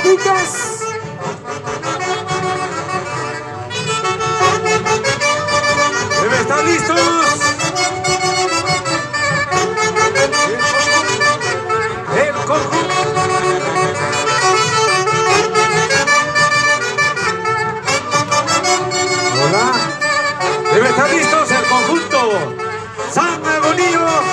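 Andean folk orchestra led by saxophones playing a lively huaylarsh dance tune with a steady beat, with voices mixed into the music.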